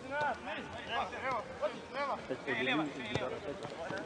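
Men's voices giving short, separate shouted calls during football play, with a single sharp knock about three seconds in.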